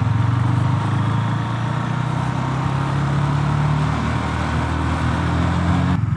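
KTM Duke 390 single-cylinder motorcycle engine running at fairly steady revs while riding, heard from on the bike over a steady rush of wind noise.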